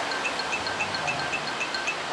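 A light, repeating chime tone, about four short strikes a second, added as a comedic sound effect over an awkward pause.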